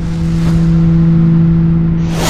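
Cinematic intro sound design: a loud, steady low drone over a rumble, with a faint swish about half a second in.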